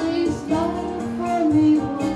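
A woman singing a melody with held notes into a microphone, accompanied by an electronic keyboard.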